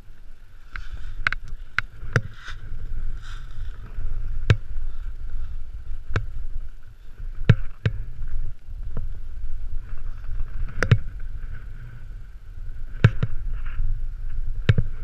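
Snowboard riding through snow, heard from a helmet-mounted camera: a steady low rumble of wind on the microphone and a hiss from the board on the snow, broken by about a dozen sharp, irregular knocks.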